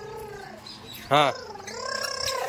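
A child making a buzzing, fluttering 'brrr' engine noise with the voice, pretending to drive a car. A short spoken 'haan' cuts in about a second in, followed by more of the voiced engine noise.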